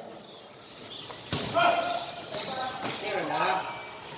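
Basketball game in a reverberant covered court: players and spectators calling out, with a single basketball thud just over a second in.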